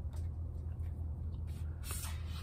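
Faint rustle and soft handling clicks of a knife being slid out of its protective sleeve, over a steady low hum.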